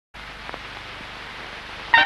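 Steady hiss of an old analogue recording with a couple of faint ticks, then the music comes in with a loud note right at the end.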